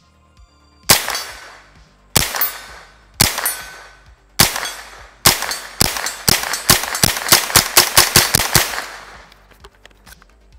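Smith & Wesson M&P 15-22 semi-automatic .22 LR rifle firing, each shot a sharp crack with a short echo. First come five shots about a second apart, then a rapid string of about a dozen shots at roughly four a second, which stops near the end.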